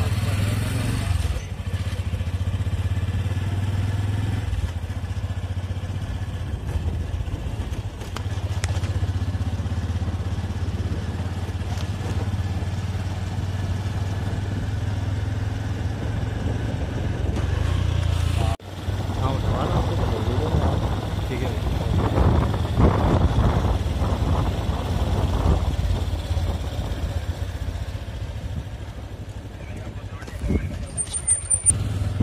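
Steady low rumble of a moving vehicle with wind on the microphone. There is an abrupt cut about two-thirds through, after which the rumble turns rougher and more uneven.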